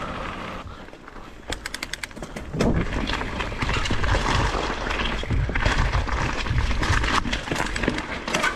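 Mountain bike ridden fast down a rocky, rooty forest trail: the tyres crunch over gravel and stones, and the bike rattles and knocks over the bumps, with a low rumble from wind and jolts on the bar-mounted camera. A quick run of ticks comes about one and a half seconds in, and the ride grows rougher and louder from about two and a half seconds.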